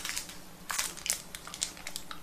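Crinkling and crackling of biscuit packaging being handled, with a string of sharp crackles in the second half.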